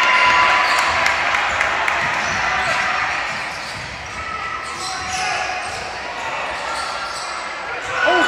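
Basketball dribbled on a hardwood gym floor during a game, the bounces heard in a large, echoing gym amid the steady chatter and shouts of the crowd.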